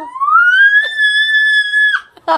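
A toddler's high-pitched squeal: one long note that rises at the start, holds level for about a second, then drops and stops suddenly.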